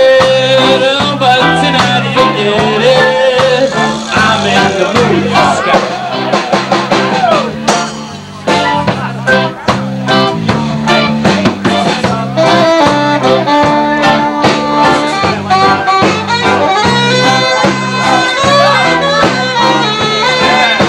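Live ska band playing an instrumental stretch, saxophone and horns over a driving drum beat. About eight seconds in the sound thins for a moment, then the full band comes back in.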